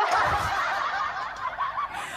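A woman laughing, mostly breath with a few short wavering voiced squeaks, close to the microphone for about two seconds.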